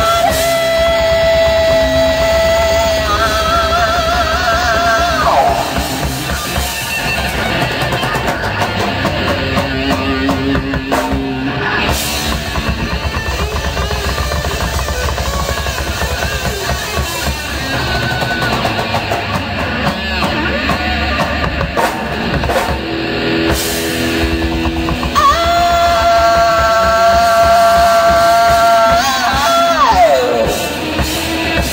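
Live rock band playing: electric guitars and a drum kit with a singer. Long held high notes ring out near the start, wavering before they stop about five seconds in, and come back over the last five seconds.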